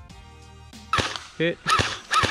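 Quiet background music, then about a second in two sharp cracks of airsoft BBs striking plastic gallon-jug targets, fired from a Thompson M1A1 airsoft electric gun.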